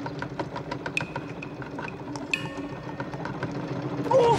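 Rapid mechanical ticking and whirring, about eight ticks a second, from the flying mechanical turtle's clockwork wings, with a couple of brief high tones.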